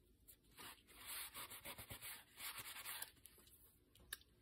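Fingers rubbing over paper, pressing a photo down onto a card: a run of quick, faint scratchy strokes from about half a second in until about three seconds in.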